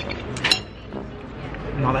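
A few short, sharp clicks about half a second in over a steady low hum of outdoor background noise, then a man starts speaking near the end.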